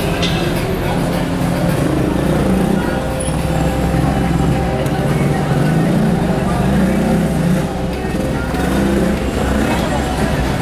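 City street ambience: people talking close by over a steady rumble of traffic.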